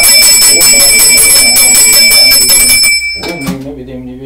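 Puja hand bell rung rapidly and continuously, its high ringing tones held steady, stopping about three seconds in. A man's chanting voice runs underneath it.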